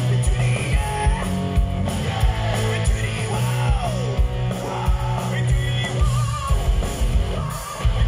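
Live rock band playing loud through a PA: electric guitars, bass and drums with a man singing, with a steady pounding drum beat. The music dips briefly just before the end.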